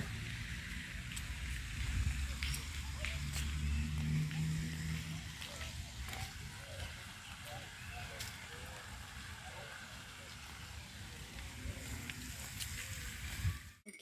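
Outdoor ambience: wind rumbling on the phone's microphone, with faint voices in the distance. It cuts off suddenly near the end.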